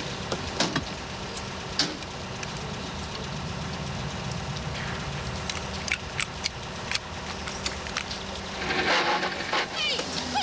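Engine of a small four-wheel-drive utility vehicle idling steadily, with a few sharp clicks and knocks from the cab as the driver climbs in and settles. Near the end, women's voices shout.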